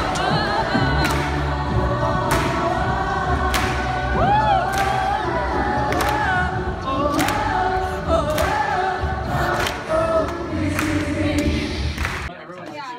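An a cappella group singing in several parts with a sustained low bass line, over a sharp percussive beat that falls about every second and a quarter.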